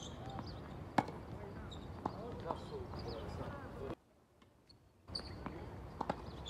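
Tennis ball struck by rackets and bouncing on a hard court in a doubles rally: one sharp hit about a second in, the loudest sound, then a few lighter knocks. The sound drops away for about a second just past the middle.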